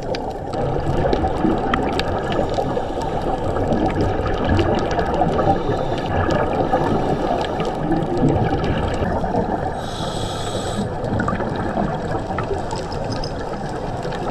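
Underwater sound picked up by a GoPro in its housing during a scuba dive: a dense, muffled rushing with scattered clicks and crackles, and a brief high hiss about ten seconds in.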